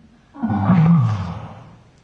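A person's mock roar, voicing the toy chameleon: a gritty growl that starts about a third of a second in, rises and falls in pitch, and fades away over about a second.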